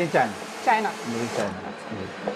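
Automatic roti-making machine (Miyako Roti Robot) running with a steady rushing noise as it cooks a roti, under a few brief snatches of voice in the first second and a half.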